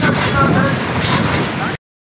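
People talking over steady outdoor background noise, cut off abruptly to silence near the end.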